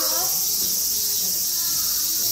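A steady, high-pitched chorus of insects buzzing without a break, with faint human voices underneath.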